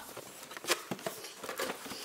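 Small scissors clicking and snipping at packaging, with the crinkle and knocks of a cardboard toy box being handled; a handful of short, sharp clicks, the loudest a little under a second in.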